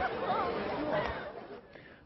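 Chatter of a crowd of spectators, a babble of voices, fading away over the second half.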